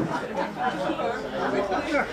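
Several people talking at once in indistinct chatter, with no single voice standing out.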